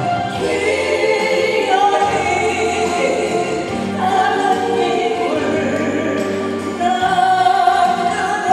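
A woman singing a Korean trot song live into a handheld microphone over loud trot accompaniment with a steady bass line, holding long notes that waver in pitch.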